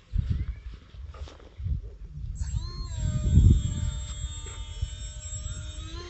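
Wind buffeting the microphone, then about two seconds in a small 1306 brushless electric motor with a three-bladed propeller winds up quickly to a steady high whine as the glider is flown under power.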